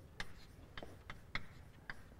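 Chalk writing on a blackboard: a run of light, irregular taps and ticks, about eight in two seconds, as the chalk strikes and drags across the board.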